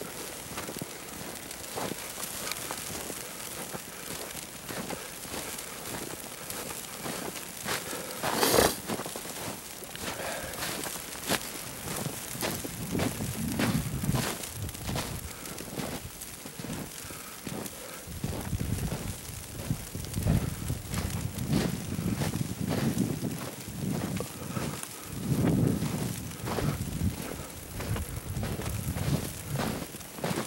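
Footsteps crunching through deep fresh snow, irregular and heavier in the second half, over a fine steady crackle. One brief loud bump about eight seconds in.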